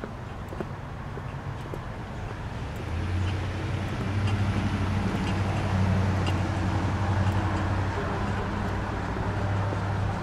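A motor vehicle's engine running steadily with a low hum at the street intersection. The hum comes in about three seconds in and holds to the end.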